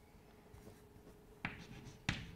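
Chalk writing on a blackboard, faint and mostly quiet, with a short chalk stroke about one and a half seconds in.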